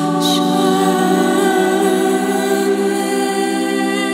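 A woman singing long, sustained wordless notes over layered vocal harmonies, like a small choir of voices. There is a short hiss just after the start.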